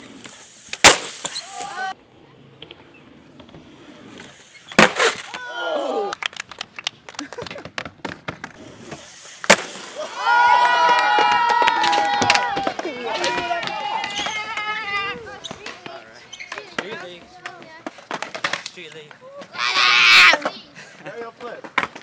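Skateboard tricks on wooden skatepark ramps: three sharp cracks of the board popping and landing in the first half. Several voices shout through the middle.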